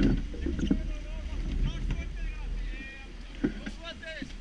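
Wind and water noise aboard a sailing yacht under way, a steady low rumble that is loudest in the first second, with voices calling over it and a single sharp click about three and a half seconds in.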